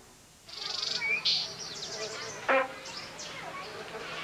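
Cartoon sound effects: a rapidly pulsing high buzz like a flying insect, with short chirpy whistles sliding up and down, and a brief loud pitched squawk about two and a half seconds in.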